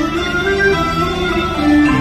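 Cantonese opera accompaniment: the traditional instrumental ensemble playing a passage between sung lines, with held melody notes stepping from one pitch to the next.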